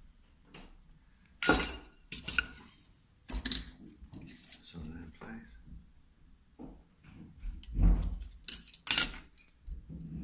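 Bench handling noises from working silver wire and a soldering iron around a rotary switch: several short scraping and clinking bursts, a few of them loud, with quieter handling between.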